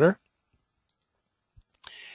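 A man's last word trails off, then dead silence, then near the end two faint computer mouse clicks followed by a brief soft hiss.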